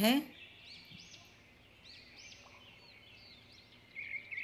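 Faint bird chirps in the background, a scatter of short high calls over low room noise, a little louder near the end.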